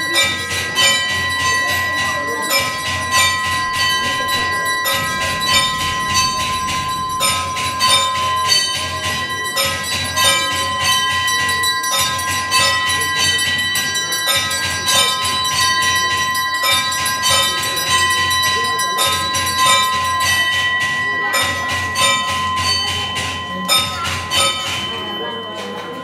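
Bells rung rapidly and without pause, a steady ringing tone carrying under the dense strikes and breaking only briefly a few times, as in the bell-ringing of a Hindu temple puja.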